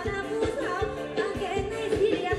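Live Thai ramwong-style dance music: a band with drum kit and electric guitar playing under a singer, with a steady drum beat of a little over two beats a second.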